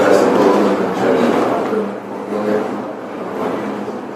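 A man's voice talking over steady noise from a crowded room, fading after about two seconds into quieter background voices and room noise.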